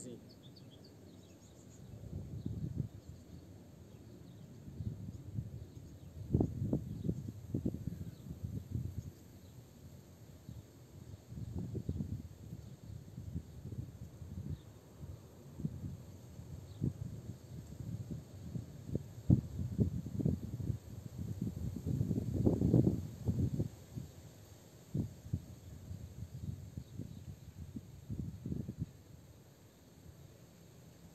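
Irregular low rumbling and buffeting on the microphone, in uneven gusts a second or two long, loudest twice (about six seconds in and again past the twenty-second mark).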